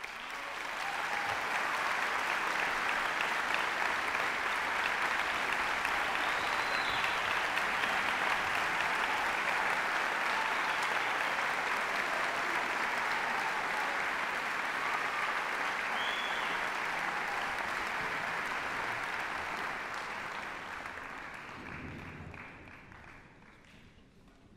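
Audience applauding: the applause starts suddenly, holds steady for most of the time, and dies away over the last few seconds.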